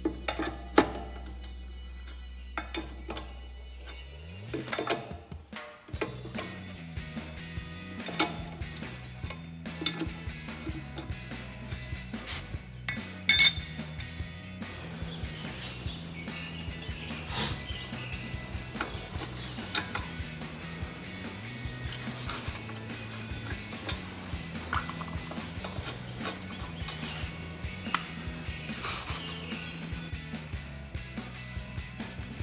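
Metal clicks and clinks of a four-way lug wrench and steel lug nuts as the old nuts are spun off a car's wheel studs and handled, over background music with a steady bass line. The sharpest clinks come about a second in and again about halfway through.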